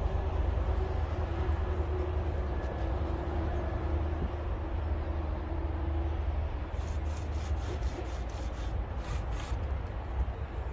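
Steady low outdoor rumble with a faint steady hum over the first six seconds, then a run of short rustles and clicks from about seven seconds in as a chainsaw that is not running is carried and handled.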